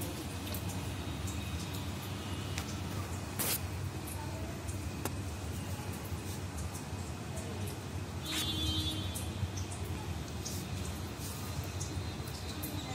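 A steady low background hum with scattered faint clicks, one sharper click about three and a half seconds in and a brief higher tone a little after eight seconds.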